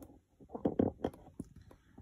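Handling noise from a camera tripod being adjusted: low rustling, then a few short, light clicks.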